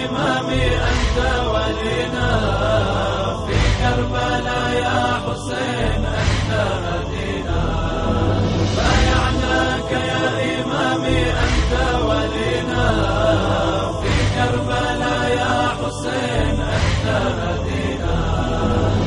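Music: a wordless chanted interlude of an Arabic Shia devotional song (latmiya) for Imam Hussein, with layered voices over a low bass and a soft beat about every two and a half to three seconds.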